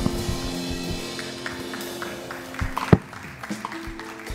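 A worship band's last chord ringing out and fading at the end of a song, with a few scattered drum taps and one sharp knock about three seconds in.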